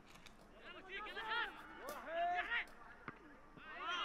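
Faint, distant shouts and calls from players on the pitch, heard intermittently over the open air of a near-empty stadium.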